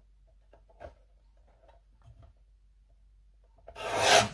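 Near silence with a few faint soft clicks and rustles of paper being lined up against a paper trimmer's edge, and a brief louder rush of noise near the end.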